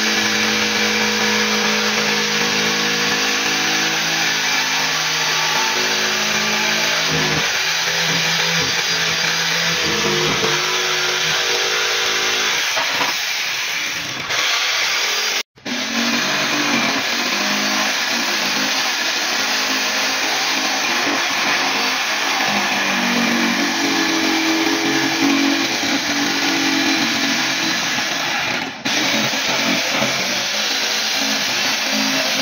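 Corded electric jigsaw sawing through plywood, its blade running steadily, with a brief break about halfway through.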